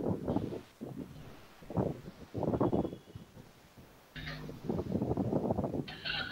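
Faint, muffled voice coming through video-call audio in short broken bursts, with a steadier low buzz under it from about four seconds in.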